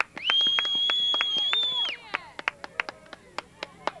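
A high, steady whistle held for nearly two seconds, then scattered sharp hand claps.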